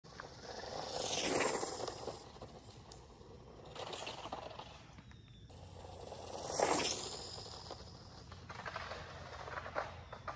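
A 3D-printed RC streamliner car passing the camera at speed twice, each pass a quick rise and fall in loudness, about a second in and again near seven seconds, with a weaker swell around four seconds.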